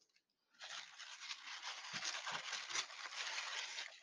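Tissue paper and paper sheets rustling and crinkling as a hand rummages in a paper-lined cardboard box, starting about half a second in.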